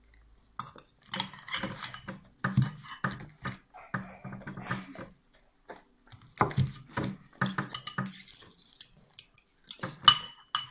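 Metal fork and knife clinking and scraping irregularly against a ceramic bowl, mixed with a basset hound eating from the bowl.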